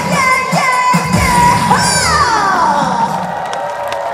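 Live singing over a pop backing track, coming to its end: the beat stops about three seconds in while a held vocal line trails off, with audience cheering and a whoop over the finish.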